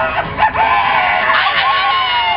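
A man's long, shouted vocal into a microphone over the end of a karaoke backing track, his voice sliding down in pitch near the end.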